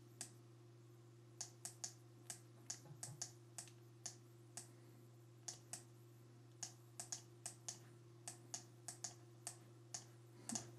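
Computer mouse button clicking irregularly, often in quick pairs, as each pen stroke of a handwritten signature is drawn with the mouse. A faint steady low hum runs underneath.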